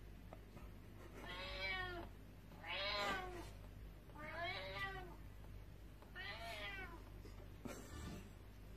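Amazon Echo Dot smart speaker playing recorded cat meows: four separate, fairly faint meows, one every second and a half or so.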